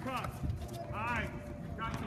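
Children's voices calling out twice, high-pitched, over the irregular thud of basketballs bouncing on the court.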